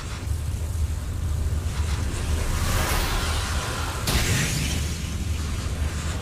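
Sound effect of a magical column of fiery light: a steady low rumble with a rushing whoosh that swells about two and a half seconds in, and a sudden sharp burst about four seconds in that then fades.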